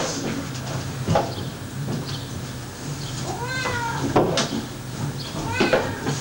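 A Siamese cat meowing: one drawn-out meow that rises and falls in pitch about three and a half seconds in, and a shorter one near the end. A few sharp knocks fall in between, the loudest right at the start.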